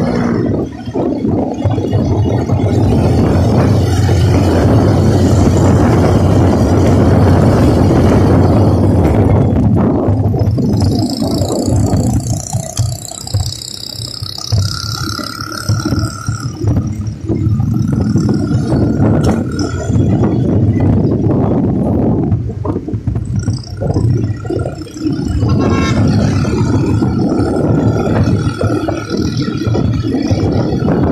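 Wind rushing over a phone's microphone with the low, steady drone of a motorcycle being ridden; the rush eases a little around the middle and picks up again.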